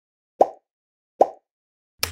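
Two short pop sound effects about 0.8 seconds apart, each fading quickly, as animated Subscribe and Like buttons pop onto the screen.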